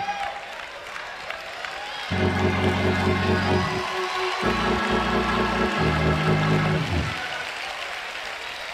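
Instrumental music: a few loud sustained chords come in about two seconds in, change twice and stop about a second before the end, with a pulsing note above them. Underneath is a soft crowd noise from the congregation with some clapping.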